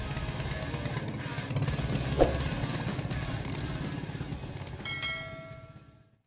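Subscribe-button animation sound effects: a sharp click about two seconds in and a bell ding near the end, over a steady low rumble that fades out at the close.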